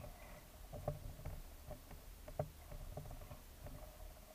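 Faint underwater ambience picked up by the camera: a steady hum with a handful of soft knocks, the loudest about a second in and again midway.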